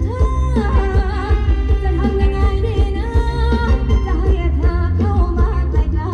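Live band playing Thai ramwong dance music, with a singer's voice over a steady heavy bass beat.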